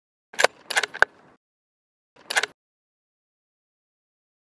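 Metallic clacks of a bolt-action rifle being worked to chamber a round: three quick clacks in the first second, then a single clack about two seconds in.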